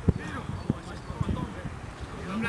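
Voices of players calling on an outdoor football pitch, over low noise with a few short thumps.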